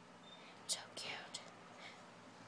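Faint whispering: a few short hissing, sibilant sounds from a hushed voice.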